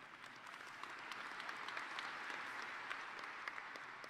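Audience applauding, a faint patter of many hands clapping that swells over the first couple of seconds and eases off slightly toward the end.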